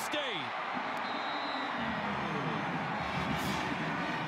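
Stadium crowd cheering and yelling after a touchdown, a dense roar of many voices.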